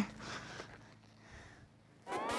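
Faint outdoor background that fades to near silence about a second in.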